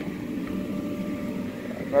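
Steady drone of an inflatable bounce house's electric blower fan running, a low hum with a faint whine above it.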